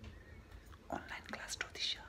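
Speech in a whisper, close to the microphone: a few short, hissy words near the end.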